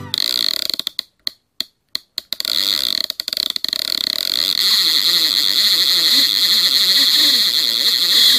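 Harsh, hissing sound effect with the logo animation, chopped on and off with short silences for the first two and a half seconds, then steady until it cuts off.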